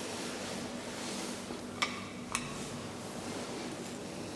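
Lift running in its shaft after being called, a steady low hum, with two sharp metallic clicks about half a second apart midway through.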